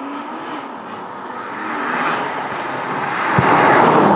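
Tuned 710 bhp BMW M2 Competition, its twin-turbo straight-six on big hybrid turbos, accelerating hard toward the microphone and going past close by. The engine note climbs in pitch and the sound builds steadily louder to a peak near the end as the car passes.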